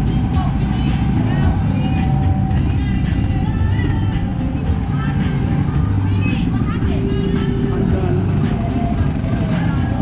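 Go-kart engine running, heard through heavy wind noise on the kart-mounted camera, with people's voices over it.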